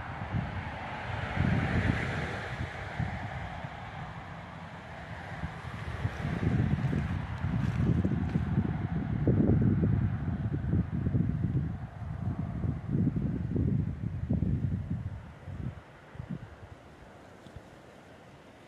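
Wind buffeting the microphone in gusts: a low rumble that swells and falls, strongest through the middle and dying away near the end, over a fainter steady wind hiss.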